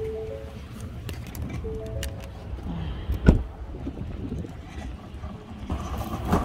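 A short electronic chime of three stepped tones, sounding twice, over a low rumble. A single loud thump comes a little past three seconds in, as of a vehicle door being shut.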